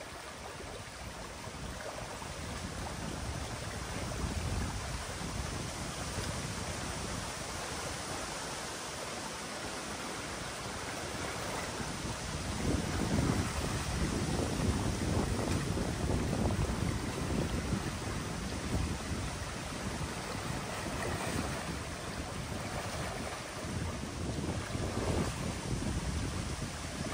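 Muddy water rushing and churning through a breach in a beaver dam as the dammed channel drains. There are gusts of wind on the microphone, heavier from about halfway through.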